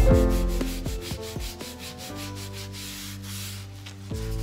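A stiff-bristled hand scrub brush scrubbing floor-tile grout coated in toilet gel cleaner, the bristles rasping back and forth in quick strokes, several a second. The strokes grow quieter in the second half.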